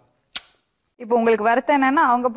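A single sharp click about a third of a second in, between stretches of dead silence, followed from about a second in by a man's voice.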